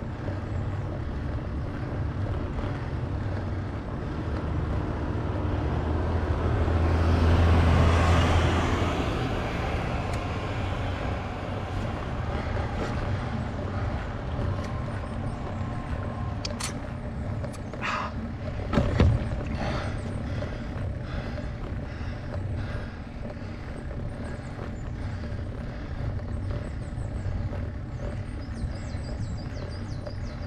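Steady low rumble of riding noise picked up by a camera on a bicycle grinding slowly up a steep climb. A louder swell rises and fades about seven to nine seconds in, and a single sharp knock comes near the two-thirds mark.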